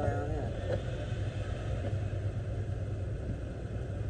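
Steady low rumble of a car's idling engine, heard inside the cabin.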